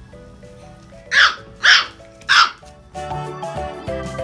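Small puppy barking in play, three sharp yaps about half a second apart, over background music that gets louder near the end.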